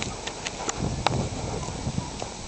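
Footsteps on a wet concrete sidewalk: a string of sharp, irregular clicks over a steady hiss.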